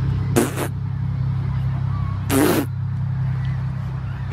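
Steady low outdoor rumble, broken by two short breathy bursts of noise, about half a second and two and a half seconds in.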